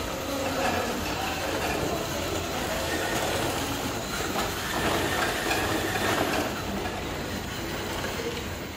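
Wheeled transport robot driving across a tiled floor: a steady mechanical running noise from its drive and wheels, a little louder about five to six seconds in.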